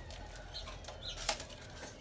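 Faint rustling and crackling of fresh green weaving strips being pulled through and wrapped around the rim of a woven basket by hand, with one sharper crackle a little past halfway.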